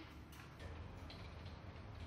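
Faint light ticking of a computer keyboard being typed on, over a low room hum.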